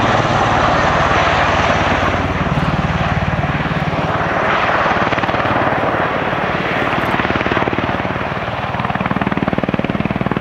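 V-22 Osprey tiltrotor flying in helicopter mode with its nacelles tilted up, descending on approach. Its two big proprotors chop with a fast, even beat over the turbine engines' steady noise. The sound is loud throughout, dips a little midway and swells again near the end as it comes closer.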